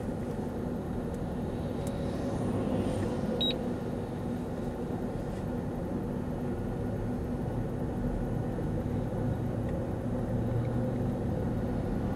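Steady engine and tyre noise heard inside a moving vehicle's cabin, with a short high beep about three and a half seconds in.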